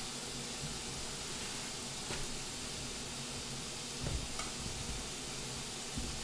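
Chard and kale leaves being stripped from their stalks by hand: faint rustling and a soft knock about four seconds in, over a steady hiss.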